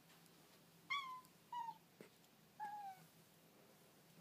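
A tabby cat meowing three times in short calls, each dropping slightly in pitch. The cat is crying at the door to be let out.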